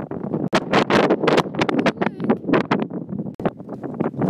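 Strong gusting wind buffeting a phone's microphone: a loud, irregular rumbling and crackling with uneven gusts.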